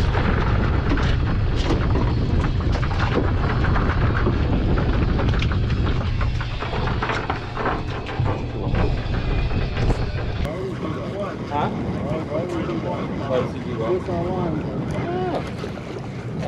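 Wind buffeting the microphone on a boat deck: a heavy low rumble with scattered clicks and knocks. About ten seconds in the rumble cuts off and quieter wavering voices take over.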